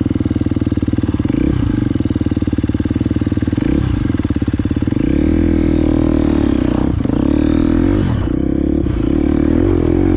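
Enduro dirt bike engine running close to the microphone, its revs rising and falling several times as the throttle is opened and closed, with quicker changes near the end as the bike pulls away up a slope.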